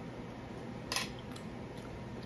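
A fork clinking against a dinner plate: one sharp clink about a second in, then a couple of fainter ticks, over a steady low room hum.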